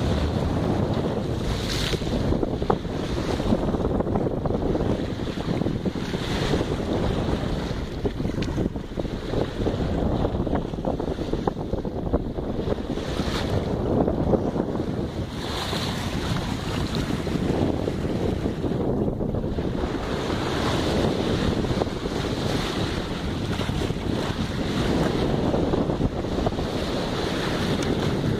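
Wind buffeting the microphone over the steady rush of water along a moving boat's hull.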